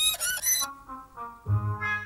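Cartoon score: a shrill, squeaky violin sawing in wavering, sliding high notes, cut off about two-thirds of a second in. Then come softer melody notes, with low bass notes entering near the end.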